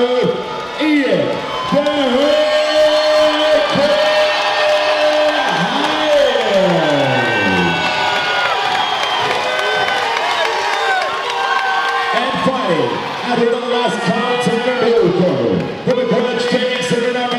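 A ring announcer's voice stretching the fighters' introduction into long, drawn-out held notes that glide up and down, with a long falling slide about halfway through, over a crowd cheering and whooping.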